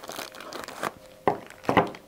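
Clear plastic bag crinkling as a bagged two-way radio is handled and lifted out of its cardboard box, with a few sharper crackles about halfway through and near the end.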